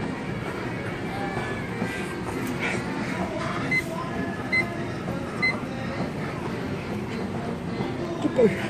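Steady background rumble of a large gym, with three short electronic beeps a little under a second apart about halfway through.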